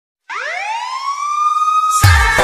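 A siren-style sound effect used as a DJ remix intro: a single tone that starts about a quarter second in, sweeps up in pitch and then holds steady.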